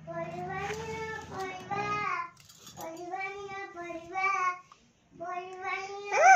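A child singing in long held notes, phrases of one to two seconds separated by short breaks, with a brief pause near the end.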